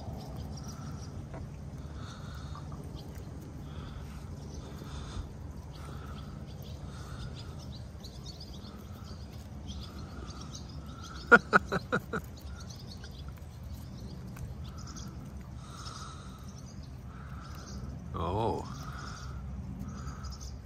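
Outdoor ambience with birds chirping, a low steady hum and a soft note repeating about once a second. A person laughs briefly about eleven seconds in, the loudest sound, and there is a short rising vocal sound near the end.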